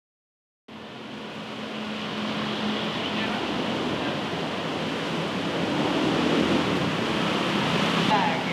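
Street traffic noise, an even wash of passing vehicles, fading in after a moment of silence and growing steadily louder. A low steady hum runs under it for the first few seconds.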